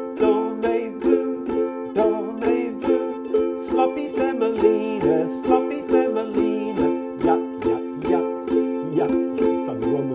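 Two ukuleles strummed together across all four strings on a single F chord, held steady, with even strokes about three a second.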